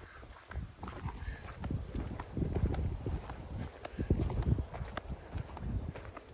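Irregular thuds of footfalls on a dirt path, mixed with the rustle and knocks of a camera being carried along.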